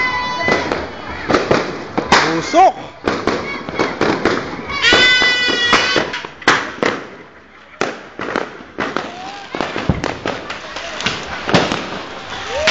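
A Judas' belt (sinturon ni Hudas), a long string of firecrackers, going off in an irregular run of sharp bangs and cracks, easing for a moment past the middle. Voices call and shout among the bangs.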